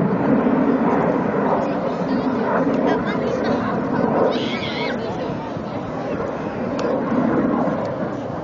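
Steady, distant noise of a MiG-29's twin turbofan jet engines flying a display, under indistinct nearby voices.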